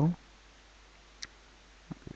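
A single computer mouse click about a second in, then the first light clicks of keyboard typing near the end, over a faint recording hiss.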